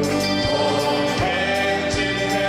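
A live worship band plays a hymn while male and female singers sing at microphones, backed by keyboard and guitars. A low beat repeats steadily about once every three-quarters of a second.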